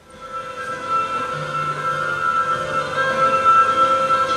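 Music begins at the start and swells over about a second into sustained held chords, with a low note joining about a second in.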